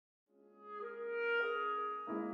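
Clarinet and piano playing classical chamber music. It fades in from silence about a third of a second in, with long held notes and a change of pitch about a second and a half in.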